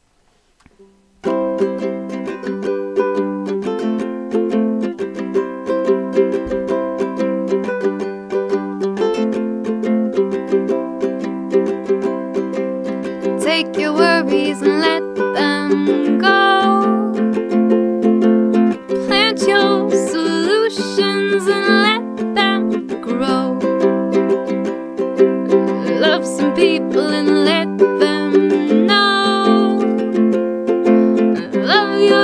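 Ukulele strumming steady chords, starting about a second in after a brief hush. A woman's singing voice joins about halfway through.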